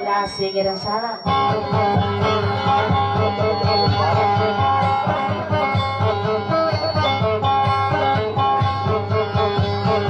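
Acoustic guitar playing music with a steady rhythm over a strong, sustained bass, the low end briefly dropping out about a second in.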